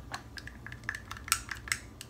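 Thin wooden stirring stick clicking and scraping against the inside of a small glass jar while stirring powder into cream, a handful of irregular light clicks.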